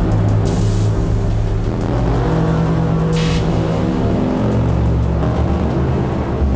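Improvised industrial electronic music from an Erica Synths Perkons HD-01 and a Soma Pulsar-23 drum synth: a heavy, continuous low drone, with two short bursts of hissy noise about half a second in and just after three seconds.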